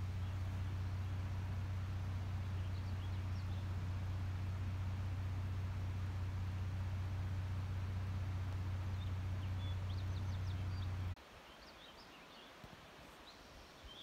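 A steady low hum with faint, scattered bird chirps over it. The hum cuts off abruptly about eleven seconds in, leaving quiet with a few more chirps.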